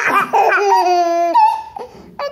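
Toddlers laughing: quick bursts of giggles, then one long high-pitched drawn-out laugh in the middle, dying away near the end.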